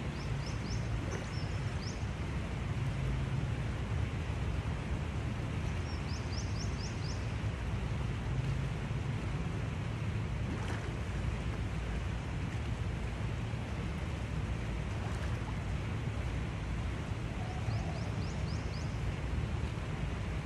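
Steady low rumble of outdoor background noise, with a bird's quick runs of high chirps heard three times: about half a second in, about six seconds in, and near the end.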